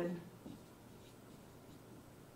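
Dry-erase marker writing on a whiteboard, faint.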